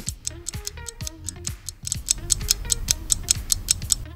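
Quiz countdown timer sound effect: clock-like ticking, about four ticks a second, over light background music.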